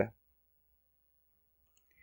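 Near silence, with a couple of faint short clicks near the end from the computer's controls as the calculator app is being opened.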